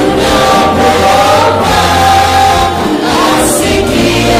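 Many voices singing a gospel hymn together, choir-style, over a sustained low bass accompaniment.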